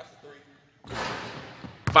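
Near silence, then about a second in a burst of hissing indoor gym room noise that starts suddenly and fades away, with one sharp thud near the end.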